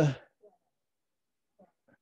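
A man's voice finishing a word in Mandarin, then near silence: a pause in speech with only a couple of faint brief sounds.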